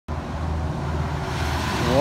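Road traffic: the low, steady engine rumble of a tractor-trailer truck passing on the street.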